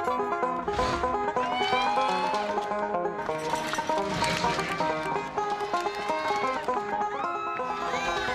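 Banjo picked fast in a bluegrass style, a quick run of plucked notes that never lets up.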